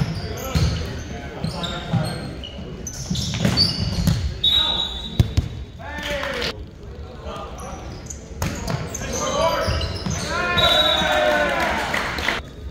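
Volleyball rally in an echoing gymnasium: several sharp slaps of the ball being hit, the loudest about five seconds in, with players shouting and calling out between contacts.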